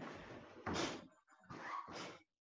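A karateka's forceful breathing during a kata: two short, sharp breaths about a second apart.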